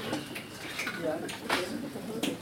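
A few sharp clinks and knocks, the loudest about one and a half seconds in, with quiet talk around them.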